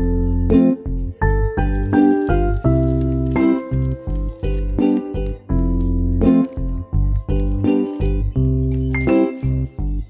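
Instrumental background music: a melody of short pitched notes over a bass line, at a steady level.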